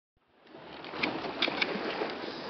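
Steady rushing noise of wind and sea aboard a small sailboat under way, fading in from silence at the start, with a few light clicks or knocks a second or so in.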